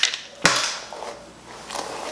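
A paddle brush dragged through a thick curly wig: two brushing strokes, the first beginning with a sharp click about half a second in.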